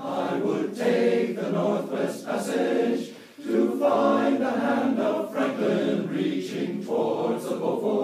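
Male voice choir singing the chorus of a folk song, with a short break between phrases about three seconds in.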